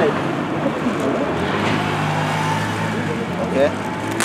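Road traffic with a steady low engine hum, fairly loud and even throughout.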